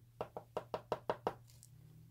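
Fingernail tapping the hard quartz tip of a cuticle pusher: about eight quick, light clicks in just over a second, stopping a little past the middle.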